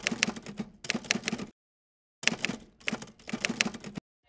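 Typewriter keystroke sound effect: two quick runs of clacking keystrokes, several a second, with a short break of under a second in the middle, as on-screen text is typed out letter by letter.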